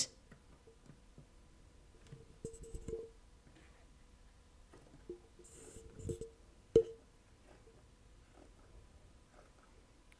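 Heavy steel tailor's shears cutting through fabric along a pinned paper pattern: a few faint, widely spaced snips and clicks of the blades, with near quiet between them.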